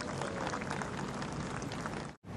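Steady outdoor ambience of the golf course: a soft, even hiss with faint scattered ticks and no distinct event.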